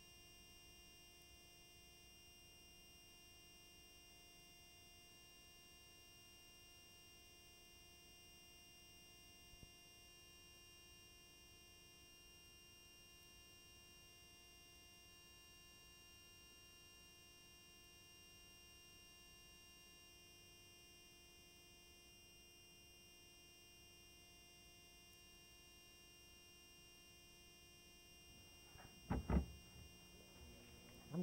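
Near silence: a faint steady hum made of several fixed tones, with two short louder sounds near the end.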